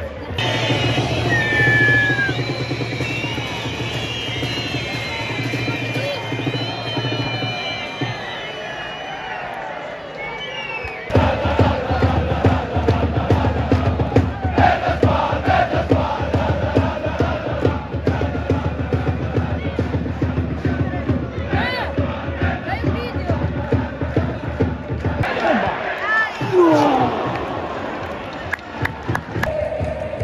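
Football supporters chanting and singing together in a stadium, loud and continuous. The sound changes abruptly twice where the footage is cut.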